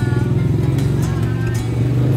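Small motorcycle engines of motorized tricycles running close by, a steady low drone with a rapid firing pulse.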